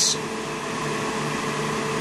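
Steady background hum of running machinery, with faint constant low tones under an even whir.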